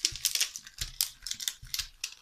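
A quick, irregular run of light clicks and taps: a diamond-painting wax pen picking resin drills out of a plastic tray and pressing them onto the canvas.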